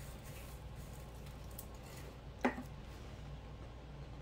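Quiet kitchen room tone with a steady low hum, broken by a single short click a little past the middle.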